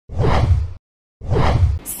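Two whoosh sound effects from a news-channel intro sting. Each lasts under a second with a deep boom underneath, and a short silence separates them.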